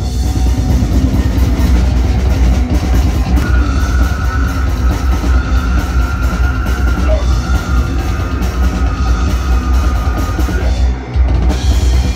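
A brutal death metal band playing live: distorted guitars, bass and drums on a Pearl drum kit, loud and dense with a heavy low end. A high held note sounds over it from about three seconds in. Near the end the band breaks off briefly, then comes back in.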